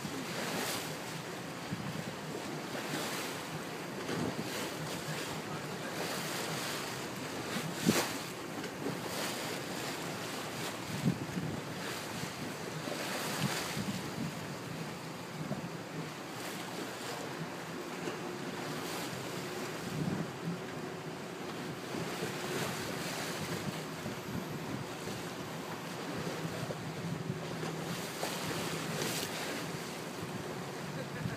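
Wind buffeting a phone microphone on a boat at sea, with the wash of sea water beneath, broken by a few sharper gusts. A faint steady hum joins about halfway through.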